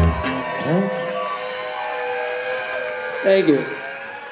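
A rock band's song ending: the drums and bass stop at once and a held chord rings on, while audience members whoop and shout, loudest a little after three seconds in.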